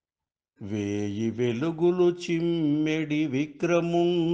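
A man's voice singing a Telugu padyam (classical verse) in a slow, chanted melody with long held notes, starting about half a second in after silence.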